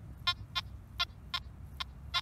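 Nokta Makro Anfibio Multi metal detector giving a string of short beeps, about five in two seconds, as its coil sweeps back and forth over a buried target.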